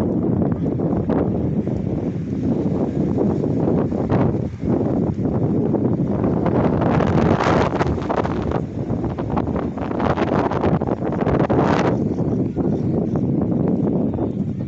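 Wind buffeting a phone's microphone: a steady low rumble that gusts stronger and hissier from about seven to twelve seconds in.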